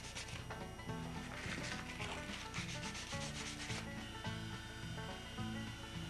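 Handheld belt sander running over a hand-carved wooden loon body, the abrasive belt rasping against the wood. The scratching is strongest in the middle of the stretch.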